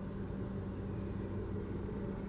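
Steady low background hum of room noise, with no distinct sounds in it.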